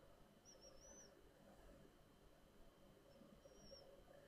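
Near silence: faint room tone, with two faint high chirps, one about a second in and one near the end.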